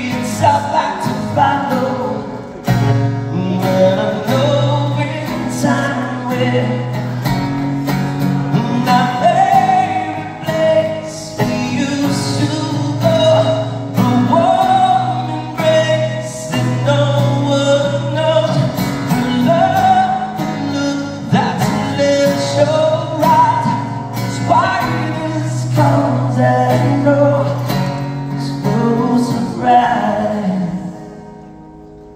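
Live acoustic performance: a male singer singing a slow, held melody over a strummed acoustic guitar.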